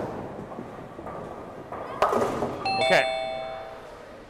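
Bowling ball rolling down the lane, then crashing into the pins about two seconds in, followed just after by a two-note electronic chime, the second note lower.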